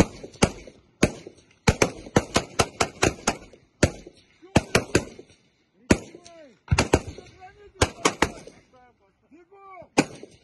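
Several rifles fire single shots at an uneven pace from a firing line. The shots come quickly, close together, about two to three seconds in, and are more spaced out in the second half.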